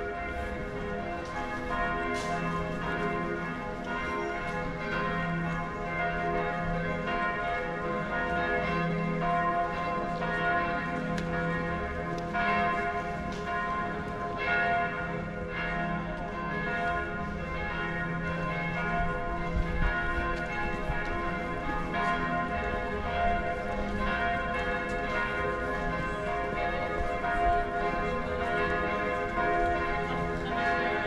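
Church bells ringing a continuous peal: several bells struck over and over, their tones overlapping and ringing on.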